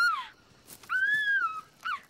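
High-pitched whimpering whines: a short one at the start, a longer one that rises slightly and falls away about a second in, and a brief falling one near the end.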